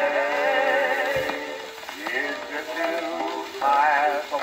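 Music played from a 1924 Cameo 78 rpm record on an acoustic phonograph: held, wavering notes, then sliding notes and short phrases from about two seconds in.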